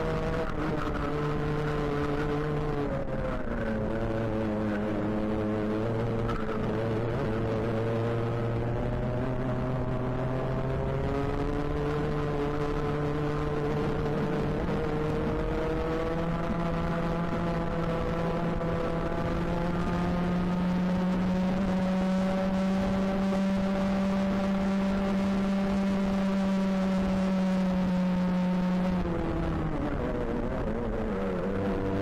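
Racing kart engine heard onboard at race pace. Its revs dip a few seconds in, climb back, hold high and steady for a long stretch, then fall off sharply near the end.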